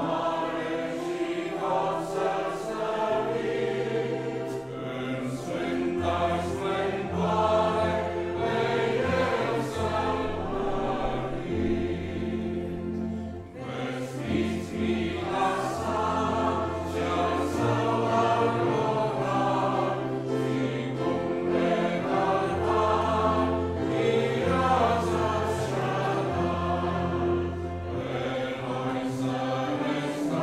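A congregation singing a hymn together in Romanian, accompanied by a grand piano, with a brief pause between lines about halfway through.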